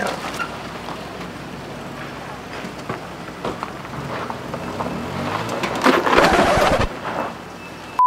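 A car driving slowly on a rough gravel and dirt street, its engine note rising in steps about halfway through as it pulls up the slope, with a constant crunching tyre noise and a louder rush of noise about six seconds in.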